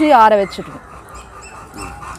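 Kadaknath chickens calling: one loud call right at the start that drops in pitch, then quieter flock sounds.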